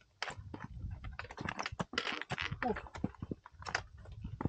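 Hiker's boots and trekking-pole tips striking rock and crusted snow: a run of irregular, sharp clicks and scrapes.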